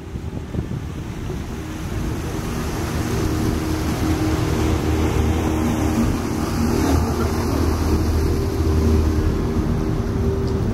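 Engine of a small motorised Jikkoku-bune canal tour boat running as it passes close below. It grows louder over the first few seconds and then holds steady, with the wash of its wake and wind on the microphone.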